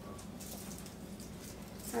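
Faint rustling and light clicks of small items being handled on a kitchen counter, over a low steady hum.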